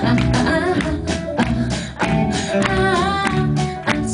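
Live rock band playing: electric and acoustic guitars, keyboards and drums, with a steady beat of about three strokes a second.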